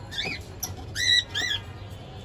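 A caged pet bird squawking three times in quick succession, each call a short rise-and-fall in pitch, the middle one loudest.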